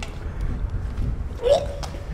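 A single short throat sound from a person about one and a half seconds in, over a steady low background rumble.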